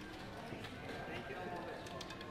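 Murmur of indistinct voices with scattered light clicks of casino chips being handled on a roulette table.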